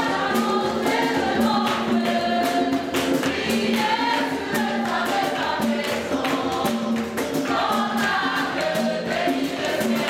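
Gospel worship music: a choir singing over a steady percussive beat.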